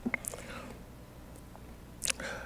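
A few faint, short clicks in the first half second, then quiet room tone through the pulpit microphone.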